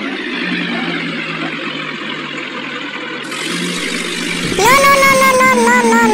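A steady engine hum, the tractor sound laid under a toy tractor's driving. About four and a half seconds in, a loud, drawn-out high call rises in pitch, then wavers for over a second.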